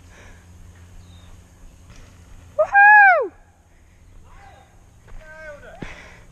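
A mountain biker's loud whoop, one call that rises and then falls sharply, about two and a half seconds in, with a shorter, softer call near the end. Under it is the steady low rumble of bike tyres rolling on the dirt trail.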